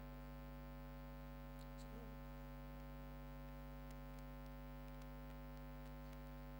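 Steady electrical mains hum with a stack of buzzing overtones, carried through the lecture hall's microphone and sound system during a pause in the talk.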